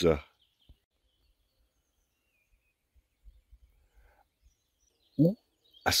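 A quiet stretch with faint, scattered bird chirps and a few soft low bumps, between a man's spoken words at the very start and near the end.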